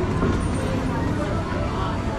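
Voices of people nearby over the steady low rumble of a loaded miniature amusement-park train rolling past on its track.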